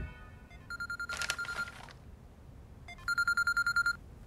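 Mobile phone ringing: two rings of a rapidly pulsing electronic beep, each about a second long, the second starting about three seconds in.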